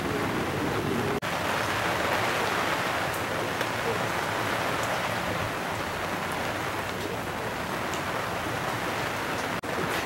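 Steady rain falling, an even hiss with no distinct drops, that cuts out for an instant twice.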